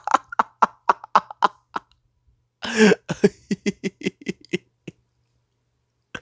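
A man laughing hard in a run of short breathy bursts, about five a second, broken near the middle by a cough-like gasp for breath. The laughter dies out about a second before the end.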